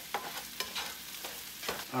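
Sliced mushrooms, green onions and sage sizzling in butter in a nonstick frying pan, with a few clicks and scrapes of a spatula stirring them.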